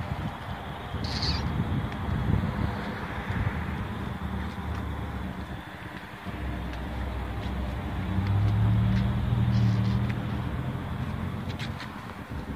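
Outdoor ambience with a vehicle engine running nearby: a steady low hum that grows louder about eight seconds in, then eases off. A short high chirp, like a bird, comes about a second in.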